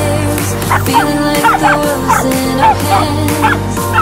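Dogs yipping and barking in rough play, a quick run of short rising-and-falling yelps, over a pop song with a steady bass.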